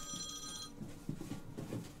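A telephone ringing with a high electronic trill, which stops less than a second in as the call is picked up. Faint handling knocks follow.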